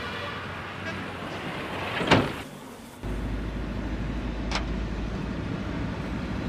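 Road vehicle engine and traffic noise: a steady vehicle hum, a sharp swelling whoosh about two seconds in, then a steady low engine rumble of traffic on the road, with one brief sharp sound partway through.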